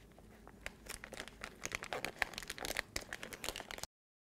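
Duct tape and plastic film crinkling and crackling as the tape is folded and pressed down over the end of a microporous vacuum strip: a quick, irregular run of faint crackles and clicks that cuts off suddenly near the end.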